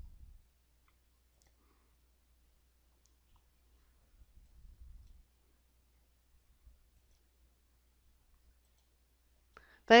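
Near silence broken by a few faint, scattered computer mouse clicks.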